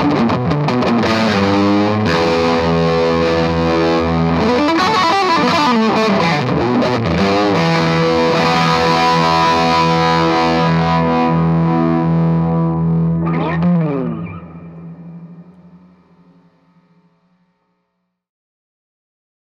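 Harmony Juno electric guitar played through an amp with the fuzz cranked: thick, distorted held notes with bends. A quick slide down at about thirteen seconds lands on a final low note that fades out over about four seconds.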